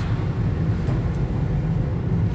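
A car driving steadily along a road, heard from inside the cabin: a continuous low rumble of engine and tyre noise.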